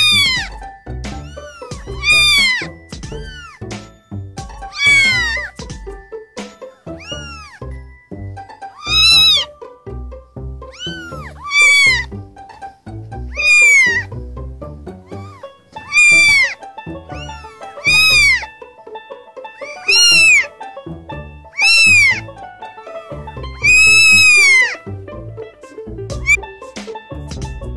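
A litter of very young kittens meowing: about a dozen high calls, roughly two seconds apart, each rising and then falling in pitch. Background music plays under them.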